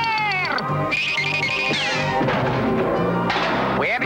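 A cartoon man's high, frightened scream, its pitch arching up and then falling away about half a second in, over background music that runs throughout.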